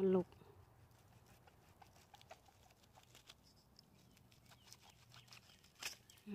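Faint scattered rustles and ticks of hands working among dead wood and leaf litter, with one sharp crack just before the end.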